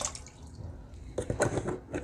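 Water splashing and dripping in a plastic foot basin as a hand stirs it around soaking feet, with a few small splashes a little over a second in.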